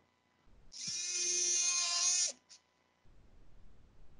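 Powered surgical oscillating bone saw running in one short burst of about a second and a half, a steady whine, as its blade works in the cut of the patellar bone block for a quadriceps tendon graft.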